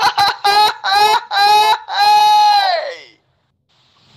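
A run of about five loud honking calls, each held at a steady high pitch, growing longer, the last and longest dying away about three seconds in.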